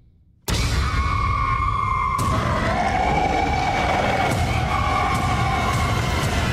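Horror-trailer jump-scare sound design: after near silence, a sudden loud blast about half a second in that holds as a dense, noisy wall with high sustained wailing tones, and a second sharp hit about two seconds in.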